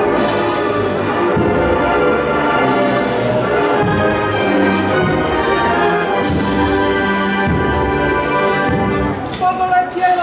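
A banda de música (brass and wind band) plays a processional march behind a Holy Week paso, with sustained brass chords. The piece breaks off near the end.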